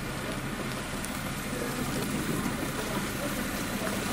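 Vehicle engines idling and running slowly on a snowy road, a steady low hum under even outdoor noise.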